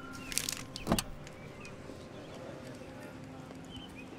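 Car door being opened: a brief clicking rattle of the handle and latch, then one sharp thump about a second in as the door unlatches, followed by low outdoor background.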